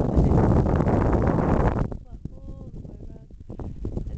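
Wind buffeting the camera microphone, a loud, even rumble that cuts off suddenly about two seconds in. It is followed by a much quieter stretch with a few short, faint pitched sounds.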